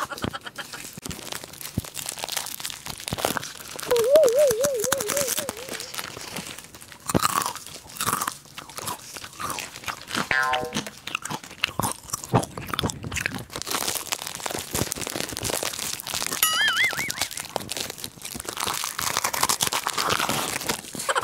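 Crunchy puffed corn snacks being bitten and chewed right at a lapel microphone, an irregular run of close crunches and crackles. A short wavering tone sounds about four seconds in, and a higher one near the end.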